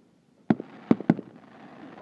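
Aerial fireworks bursting: three sharp bangs about half a second and a second in, the last two close together, followed by a steady hiss.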